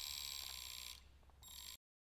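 Faint, high, shimmering chime-like ringing from an animated end card's sound effect. It fades about a second in, comes back briefly and then cuts off to silence.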